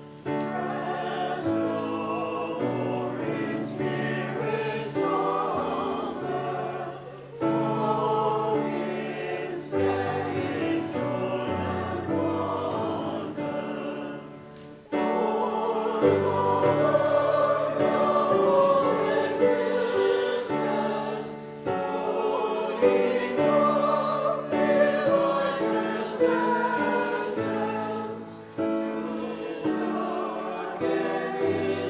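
Choir singing sustained sacred music, in phrases of roughly seven seconds with brief breaks between them.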